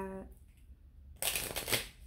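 A deck of cards being shuffled by hand: one brief rustling burst of card edges lasting under a second, a little past the middle.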